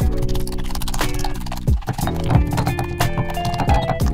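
Stone mortar and pestle mashing strawberries: repeated wet squishes and knocks of the pestle, several a second, over background music with held notes.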